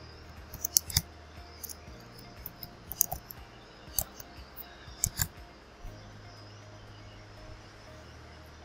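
Scattered sharp clicks of a computer keyboard and mouse, about eight in the first five seconds, over a faint low hum.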